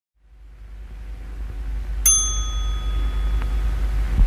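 A low hum fades in, and about two seconds in a small bell is struck once, its clear ring dying away over a second or so.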